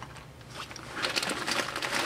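Crinkly rustling and handling noise from a small pouch and the loose items in it. It is faint at first and grows busier from about halfway.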